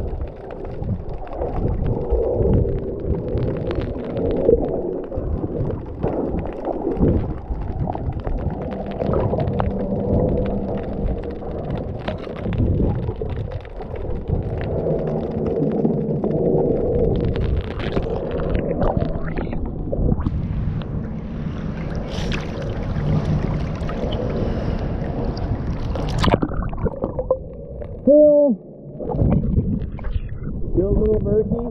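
Muffled underwater noise picked up by a submerged GoPro: a low rumbling wash of water with scattered clicks and gurgles. Near the end a brighter hiss builds and cuts off suddenly, followed by a short, bending gurgle as the camera nears the surface.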